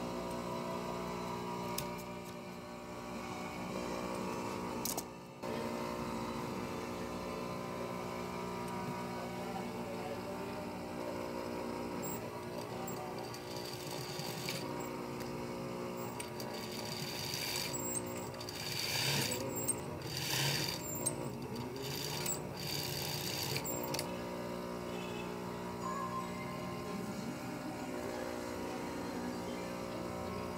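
Background music with steady sustained tones, and a sewing machine running in several short stitching bursts about two-thirds of the way through.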